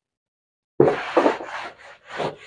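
A whiteboard eraser wiping marker off the board, in a quick series of about four rubbing strokes starting about a second in.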